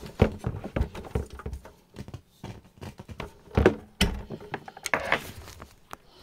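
Handling noise from the phone camera being picked up and moved: irregular knocks and taps with short bursts of rubbing.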